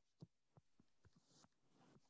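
Near silence: room tone, with a few very faint ticks.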